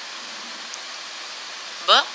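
Steady background hiss with no other sound in it; a woman's voice starts saying 'b' near the end.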